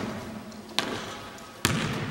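Basketball bouncing on a hardwood gym floor: two sharp bounces a little under a second apart, the second one louder.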